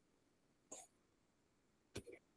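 Near silence, with one faint short noise about three quarters of a second in.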